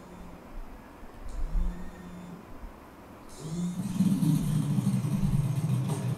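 Motorcycle engine running, a loud steady low rumble with hiss above it that starts about three seconds in. Before that there are only faint low sounds.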